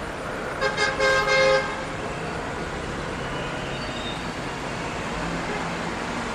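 Shanghai Maglev train sounding a short horn blast in two quick pulses about half a second in, lasting about a second, as it approaches, over steady background noise.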